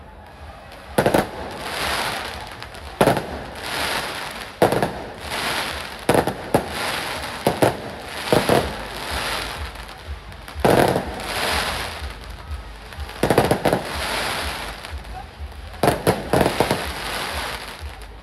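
Fireworks display: a string of sharp bangs, one every second or two with some in quick pairs, over a steady hiss and crackle of burning effects between them.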